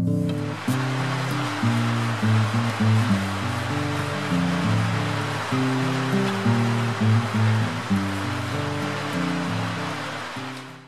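Background music of held, slowly changing notes, with an even rushing hiss laid under it from about half a second in.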